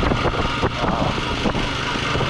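Honda ATV engine running steadily while riding along a dirt trail, with a few short knocks and rattles from the machine going over the rough ground.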